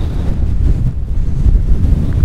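Gusty wind buffeting the microphone: a loud, uneven low rumble.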